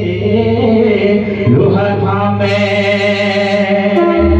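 Pahari folk song performed live through a PA system: a voice holds a long drawn-out note, starting about a second and a half in, over a steady low keyboard drone.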